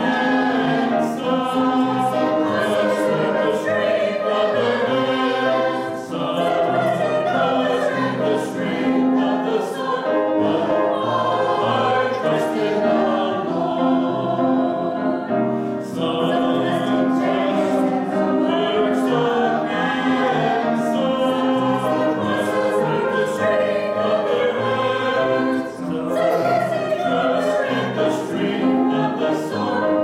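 Mixed church choir of men's and women's voices singing an anthem with piano accompaniment, with short breaths between phrases.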